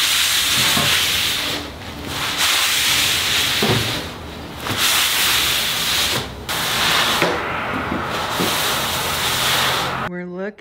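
Cloth rag rubbing across a tung-oiled concrete countertop, wiping off the excess oil in long strokes, with short breaks between strokes.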